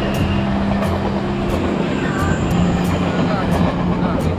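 Taiwan Railway passenger train passing close by: a steady low rumble with sharp ticks every half second or so.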